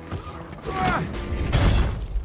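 Film fight sound effects: a short gliding cry, then a heavy crash of a body being thrown and tumbling over rocky ground, loudest about a second and a half in.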